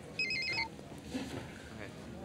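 Cell phone ringing: one short burst of an electronic ring, a rapid trill flicking between two pitches for about half a second, followed by a brief lower beep.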